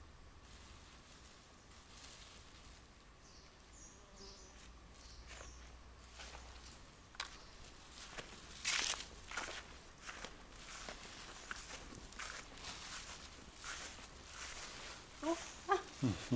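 Footsteps on dry grass and packed earth, irregular steps that start about seven seconds in and go on several times a second. A few faint high chirps come earlier.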